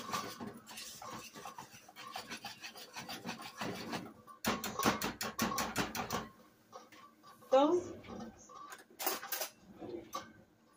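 Wire whisk beating mashed potatoes in a metal pot: runs of rapid scraping strokes against the pot, thickest about halfway through and stopping and starting again.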